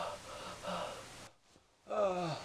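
A person's voice whimpering and gasping in short pitched breaths. About a second and a half in it cuts off to silence for half a second, and a loud falling moan starts at the end.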